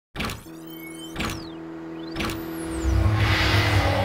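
Logo intro sting made of sound-design effects: three sharp hits about a second apart, each with a sweeping whoosh, over a sustained tone, then a deep rumble swelling in the last second.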